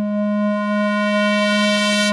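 Trance music: a single synthesizer note held steady, a plain pitched tone with a bright edge of overtones and no beat under it.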